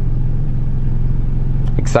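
Steady low rumble of a car heard from inside its cabin, starting suddenly at a cut, with a short spoken word near the end.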